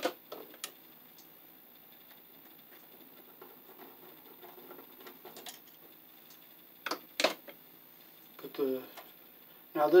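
Scattered small clicks and taps of hand tools working a wire loop onto the screw terminal of an old electrical outlet, with a sharp click at the start and two louder clicks about seven seconds in.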